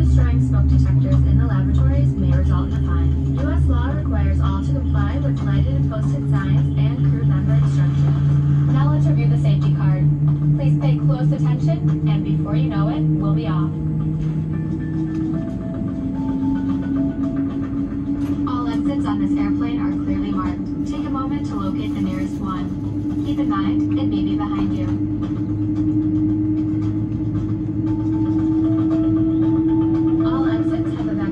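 Low, steady drone of a Boeing 787-9's machinery heard inside the cabin, its tones slowly rising in pitch and shifting to a new, higher tone about halfway through, under indistinct voices and music.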